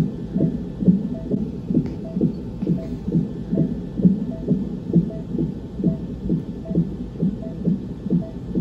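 Fetal heartbeat from a cardiotocograph's Doppler speaker, in steady, even pulses a little over two a second, which fits the baby's heart rate of about 132 beats a minute shown on the monitor. A faint short tone comes with each beat.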